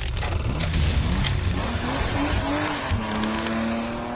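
Title sound effect of racing car engines revving, their pitch gliding up and down over a dense rush of noise, settling to a steadier engine note near the end.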